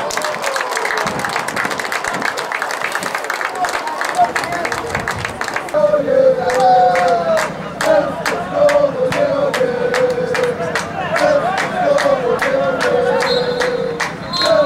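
Small football crowd clapping and cheering; from about six seconds in, supporters chant together in unison over steady rhythmic clapping, about two claps a second.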